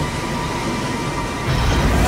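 Film sound mix of a storm at sea: a heavy, steady rumble of wind and a giant breaking wave, with orchestral score under it, swelling about one and a half seconds in.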